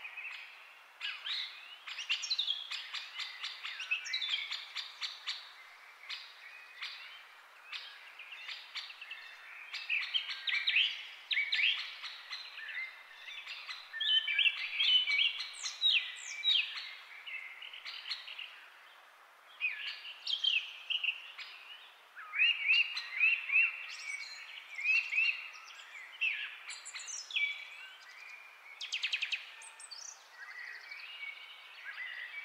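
Several birds chirping and singing at once, a continuous chorus of short, overlapping calls and quick rising and falling notes.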